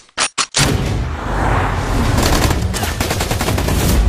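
Film gunfire: a few quick single shots, then from about half a second in a dense run of rapid automatic fire over a heavy low rumble.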